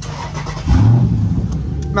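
Warm start of a Dodge Charger SRT 392's 6.4-litre HEMI V8: a short crank, then the engine catches about two-thirds of a second in with a loud rev flare that settles into a steady idle.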